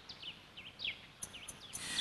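Faint bird chirps, a string of short rising-and-falling calls, over a quiet outdoor background.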